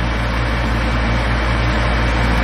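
Kitchen range hood fan running steadily on its highest setting: an even rushing of air over a low hum.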